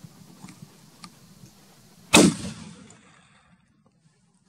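A single hunting-rifle shot about two seconds in, a sharp crack that trails off over about a second, fired at a Himalayan ibex.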